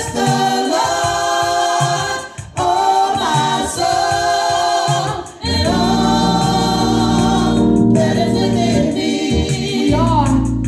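A small gospel choir singing held notes over keyboard accompaniment. The singing dips briefly twice, about two and a half and five and a half seconds in.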